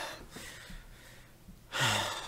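A man's voice trails off at the start, then after a short pause he takes a quick, audible breath in near the end, close to the microphone.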